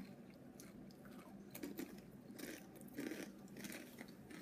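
Faint crunching and chewing of Doritos tortilla chips, in irregular bursts that cluster around the middle.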